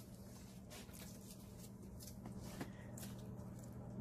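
Faint rustling and scattered small ticks of a paan being made by hand at the counter, as betel leaves and fillings are handled. A steady low hum runs underneath.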